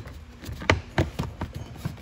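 Plastic lower dash trim cover in a Fiat 500 footwell being pressed into place by hand: a handful of short, sharp clicks and taps as its tabs snap into their slots, the strongest about two-thirds of a second in.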